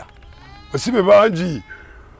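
A man's voice: one short spoken phrase with a wavering pitch, lasting about a second, in the middle.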